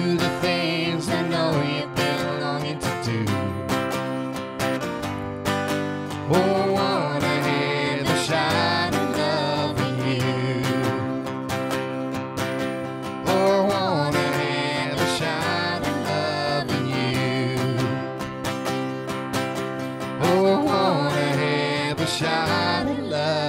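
A live acoustic country song: a steadily strummed acoustic guitar with a man and a woman singing together in places.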